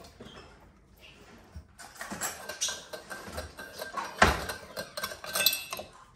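Small stainless steel cups and a metal coffee pot clinking and knocking on a granite countertop as a capuchin monkey handles them. The clinks are sparse at first, come thick and fast from about two seconds in, and the loudest knock falls a little after four seconds.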